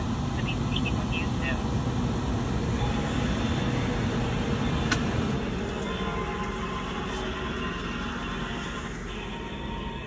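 Steady low rumble of a truck cab's engine and road noise, easing off slightly towards the end, with a single sharp click about five seconds in.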